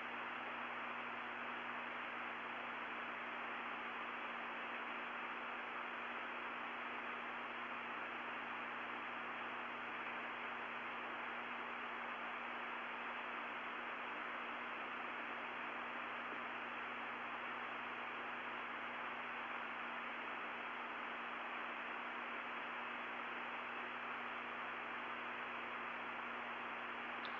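Steady hiss with a low constant hum from an old, narrow-band broadcast audio line, unchanging throughout, with no other sound on it.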